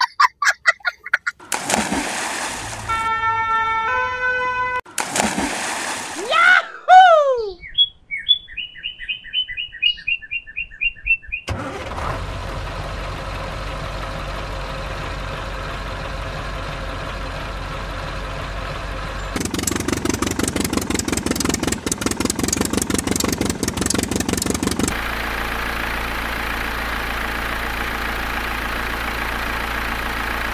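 A run of short beeps, falling glides and a fast string of high beeps. Then, from about twelve seconds in, a steady truck-engine sound, which pulses quickly for several seconds and settles back to a steady run.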